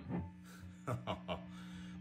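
A man laughing quietly in a few short breathy bursts, over a steady low hum from the idling tube guitar amplifier.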